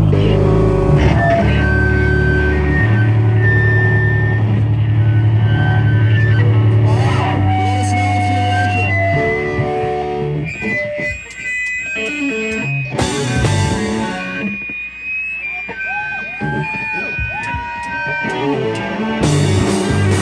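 Live rock band playing an instrumental: electric guitar lines over sustained bass notes. Around the middle it thins to a sparse guitar passage with bending notes, and the full band comes back in near the end.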